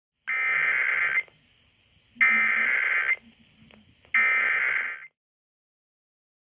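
Emergency Alert System SAME header: three bursts of digital data tones, each about a second long with about a second's pause between them, marking the start of a Required Monthly Test.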